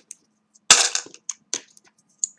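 Plastic chips dropped into a plastic container: one sharp clatter about two-thirds of a second in, then a few lighter clicks.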